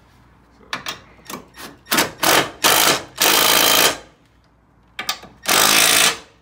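Cordless impact tool snugging down the bolts of a rear engine-mount bracket. It goes in a few short taps, then several longer hammering runs, the longest lasting under a second.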